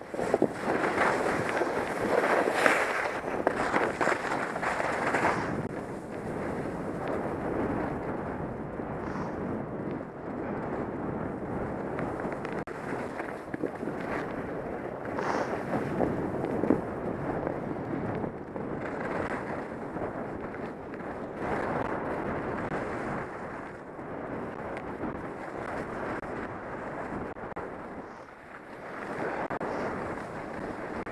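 Skis sliding over packed snow, mixed with wind rushing over a helmet-mounted camera's microphone: a steady rushing noise that swells and eases with the turns, louder in the first few seconds.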